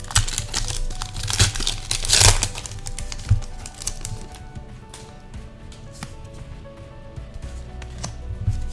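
Foil booster-pack wrapper crinkling and tearing open, loudest about two seconds in, followed by quieter light clicks of trading cards being handled, over soft background music.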